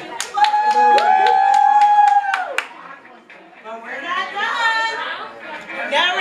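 Hand clapping in a quick even rhythm, about four to five claps a second for about two and a half seconds, with a voice holding one long note over it. Then a short lull and people talking.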